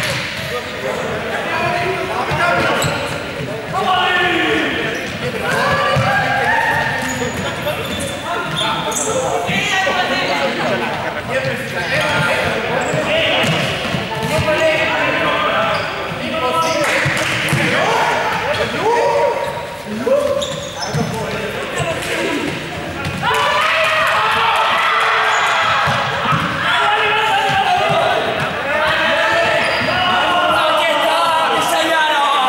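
Balls bouncing repeatedly on a gym floor as players dribble while running, amid a group of young people shouting and talking over each other, all echoing in a large sports hall.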